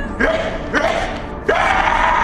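A person crying out three times in quick succession: short yelping cries that each slide sharply up in pitch as they start.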